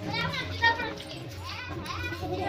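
Children's high-pitched voices calling out twice, with wavering pitch, over a steady low hum.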